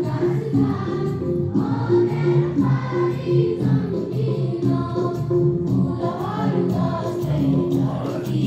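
A group of students singing together at assembly, a choir-like song of steady held notes moving from pitch to pitch without a break.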